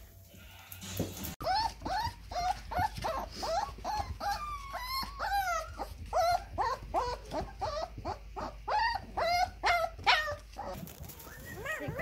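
Husky-mix puppies whining and yipping in a rapid string of short, high calls, starting about a second and a half in and stopping shortly before the end.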